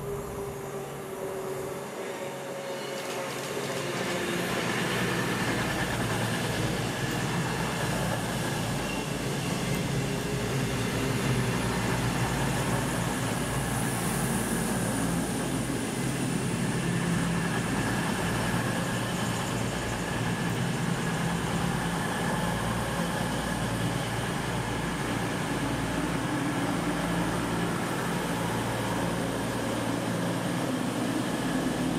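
A pair of coupled Avanti West Coast Class 221 Voyager diesel-electric trains arriving, their underfloor diesel engines running. The sound builds over the first few seconds as the train nears, then holds steady as it draws slowly alongside the platform.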